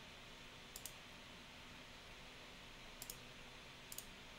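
Near silence with room hiss, broken by three faint clicks: one about a second in, one about three seconds in and one just before the end.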